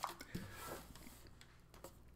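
Faint clicks and rustling from hands handling the headphones around the neck, mostly in the first second.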